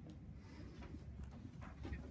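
Quiet room tone with a low steady hum and faint handling noise: a few light rustles and ticks in the second half as a paper flyer is picked up and moved.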